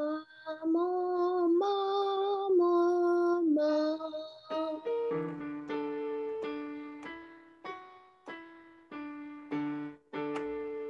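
A female voice sings a few held notes of a vocal warm-up exercise. About five seconds in, a piano takes over, playing a steady run of short notes about one and a half per second.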